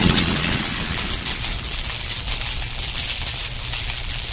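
Steady outdoor hiss over a low rumble, with faint irregular crackles.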